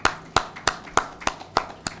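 Hand clapping in a steady rhythm, about three distinct claps a second. This is applause from a few people rather than a crowd.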